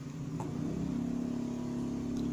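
A motor engine running steadily with a low hum. It swells about half a second in, then holds level.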